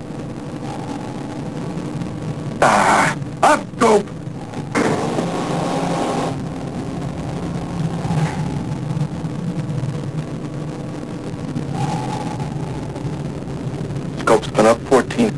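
Steady low hum of a submarine's interior in a war-drama soundtrack, broken about three seconds in by four loud, short, sudden bursts over roughly two seconds, as the fired torpedoes are expected to strike.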